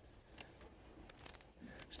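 Kitchen shears faintly snipping around the edge of a shedder crab's shell, a few short quiet cuts.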